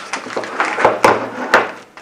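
Handling noise on a wooden tabletop: a paper instruction leaflet rustling, with a few sharp knocks as the small plastic plug-in sensor unit is moved and set down.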